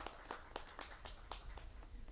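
Faint, sparse hand clapping from a few people: irregular claps, about five a second.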